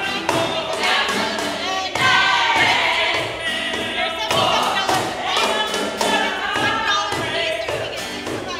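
Voices singing a song over the beat of a cajón box drum, whose thumping strokes are the loudest and most frequent sound, with instrumental accompaniment.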